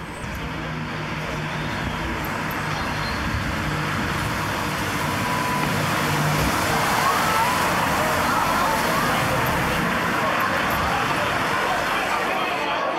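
Steady ambient wash of car traffic with voices mixed in, growing steadily louder.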